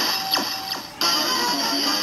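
DX Build Driver toy belt playing its electronic sound effects: two quick sweeping swooshes, then a musical jingle that starts suddenly about a second in.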